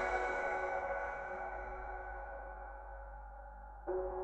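Quiet passage of a deep house track: a held synth chord slowly fades out, and a new chord comes in sharply near the end.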